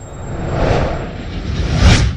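Loud rushing, rumbling sound effect that builds up, swells, and is loudest near the end.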